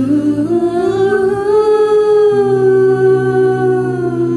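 A mixed a cappella vocal group singing a slow held chord: one voice slides up and holds a long note over sustained backing voices, and the low bass part moves to a new note about halfway through.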